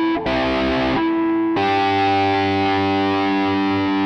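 Electric guitar played through the B6 mini amp's overdrive effect into a Talisman delay pedal, giving distorted chords. A few short chords come first, then one long chord is held from about a second and a half in.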